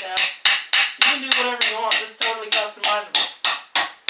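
A fast, even beat of sharp knocks, about four a second, with a pitched, voice-like tune between the strokes.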